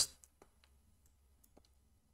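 A few faint, scattered clicks of a computer mouse and keyboard as text is selected.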